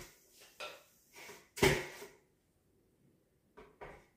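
Kitchenware knocking: a ceramic plate handled on a glass cooktop, with a few light knocks and one louder, ringing clink about one and a half seconds in, and two small taps near the end.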